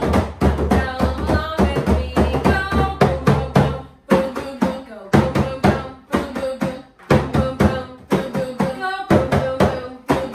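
Two frame drums played with the flat of the hands, a quick run of patting strokes with a couple of short breaks, and a voice singing over the drumming at times.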